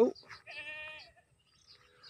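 A goat bleating once: a single short call about half a second in.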